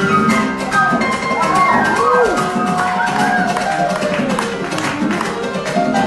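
Live duo of Venezuelan cuatro and grand piano playing a Latin American tune. The cuatro's strummed chords and the piano's lines run together at a steady, full level. Over the music, a voice glides up and down a few times in the first half.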